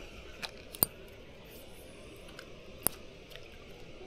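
A few short, sharp light clicks, two of them louder, about a second in and near three seconds, over a faint steady background.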